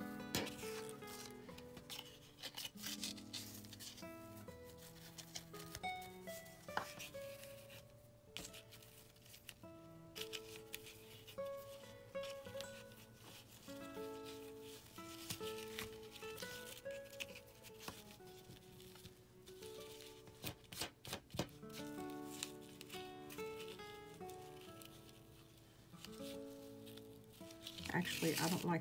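Quiet background music of held notes stepping up and down, with scattered clicks and rustles of ribbon and paper being handled.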